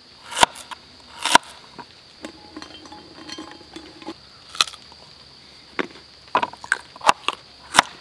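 Knife chopping carrots on a plastic cutting board: single sharp knocks of the blade on the board, coming quicker near the end. In between, the chopped carrots are tipped off the board into the cooking pot.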